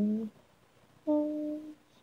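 An a cappella voice singing 'na' syllables. A rising phrase ends just after the start, and about a second in comes one last held note that stops after well under a second: the closing note of the arrangement.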